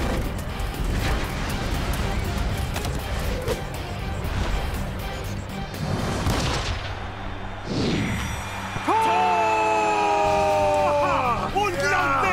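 Cartoon action soundtrack: music with whooshing and impact sound effects during a spinning football move and a kick. About nine seconds in, a long held shout rises over the music and lasts a couple of seconds.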